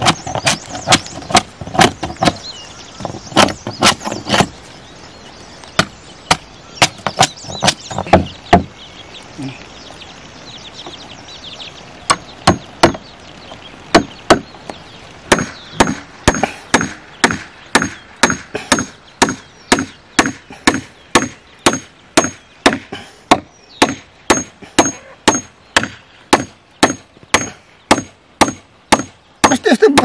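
Claw hammer driving nails into wooden planks: runs of quick blows, a short lull, then a steady beat of about two blows a second.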